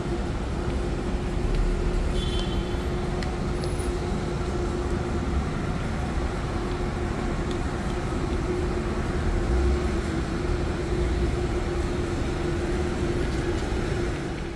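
Steady road traffic noise of a city street, with a constant low hum running through it.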